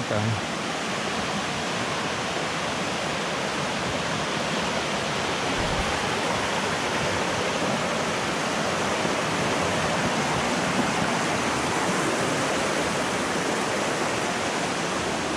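A rocky stream running fast over boulders: a steady, even rush of water.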